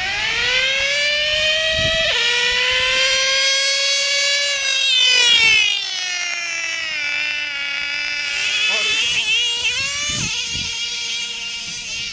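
Nitro RC car engine running with no muffler, a loud high-pitched whine. It revs up, drops suddenly about two seconds in, climbs again to a peak, falls away, then rises and falls in a few short throttle blips near the end.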